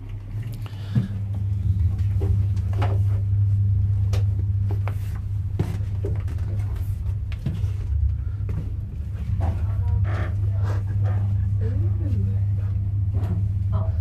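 Steady low rumble with scattered knocks and bumps, typical of a handheld camera being carried and jostled while climbing through a narrow submarine hatch. Voices come in briefly near the end.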